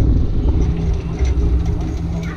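Unpowered soapbox cart's wheels rumbling on asphalt as it coasts and slows, heard from on board, with a steady low hum coming in about half a second in.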